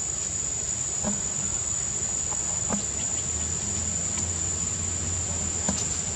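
Insects droning steadily at one high, unbroken pitch, with a few faint clicks.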